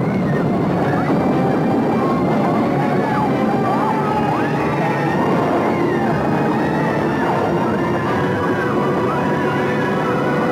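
A crowd screaming in panic, many overlapping rising and falling cries over a steady, dense roar of explosions and fire.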